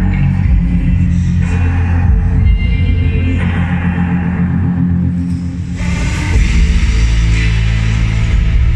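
Loud music with heavy, sustained low bass notes and chords; it swells and grows brighter about six seconds in.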